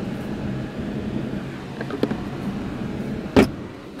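Faint light clicks of the plastic centre-console storage bin being handled, then one sharp clunk near the end as the armrest lid is shut, over the steady low hum of the running car.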